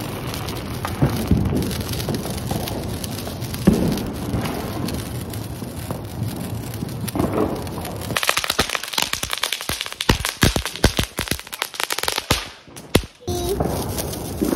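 Fireworks fizzing and crackling: a steady hiss for the first half, then about four seconds of dense, rapid sharp pops and crackles that stop abruptly.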